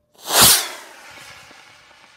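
Model rocket motor igniting and lifting off the pad. A sudden loud whoosh peaks about half a second in, then fades into a thinning hiss as the rocket climbs away.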